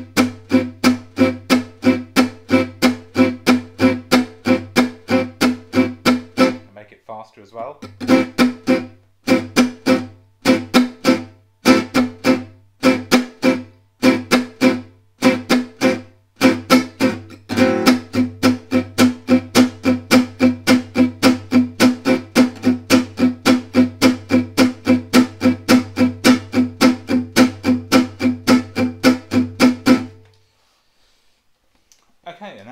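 Selmer-style gypsy jazz acoustic guitar playing la pompe rhythm on an Am6 chord: short, crisp strummed chords on every beat. The pulse breaks off briefly about seven seconds in, restarts unevenly, then settles into a faster, steady beat for the last dozen seconds, as the tempo is pushed up.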